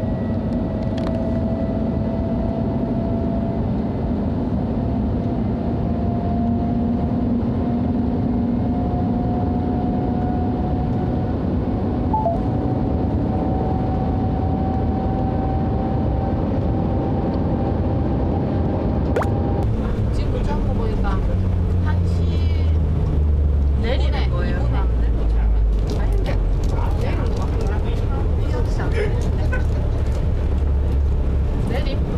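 Shanghai Maglev train heard from inside the cabin: a steady whine that slowly rises in pitch as it speeds up. About two-thirds of the way through it gives way to a lower hum that steps down in pitch as the train slows.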